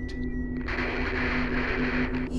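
Electronic soundtrack drone: a steady low hum with a thin high tone, joined about two-thirds of a second in by a hiss like static.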